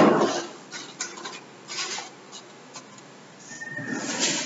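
Chalk scratching on a blackboard in a series of short strokes, after a loud rustle at the very start.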